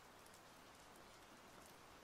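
Near silence: a faint steady hiss in a pause between narrated sentences.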